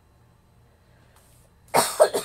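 A woman coughs once, loudly and harshly, about a second and a half in, after a quiet stretch.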